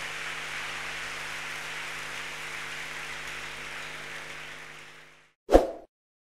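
A large congregation applauding, an even wash of clapping over a steady low hum of several held tones, fading out after about five seconds. Near the end comes a short, loud whoosh-like hit.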